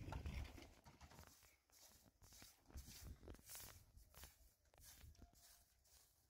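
Near silence, with faint scattered knocks and rustles, the loudest right at the start.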